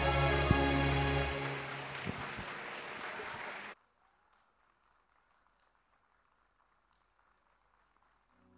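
Children's choir and backing music holding a final chord, which dies away over the first couple of seconds into a brief wash of noise. The sound cuts off abruptly about three and a half seconds in, leaving near silence.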